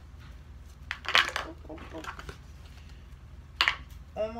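Hands working slime and handling a plastic container: two short bursts of crackly clicks, about a second in and again near the end, with softer squishing sounds between.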